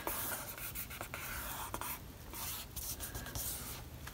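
Hands smoothing and pressing a glued sheet of paper flat onto a book cover: faint, dry rubbing of skin over paper, with a few small taps.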